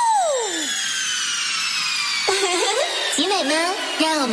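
Electronic dance track in a breakdown: the beat drops out and a sweep falls steeply in pitch over the first second, while higher sweeps slide slowly down throughout. A voice comes in about two seconds in.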